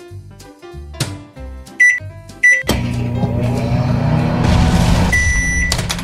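Toy microwave oven's electronic sounds: two short beeps, then about three seconds of steady humming running sound with a longer beep near its end.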